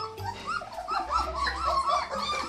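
Three-week-old German shepherd puppies whining: a quick run of short, high cries, several a second.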